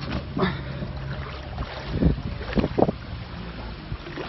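Muddy floodwater rushing down a street, heard through a phone microphone with wind noise on it and a steady low hum underneath. A few short, louder sounds come about two to three seconds in.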